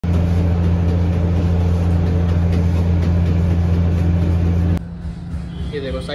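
Loud, steady low machine hum of commercial kitchen equipment, which cuts off sharply near the end, where a man starts talking.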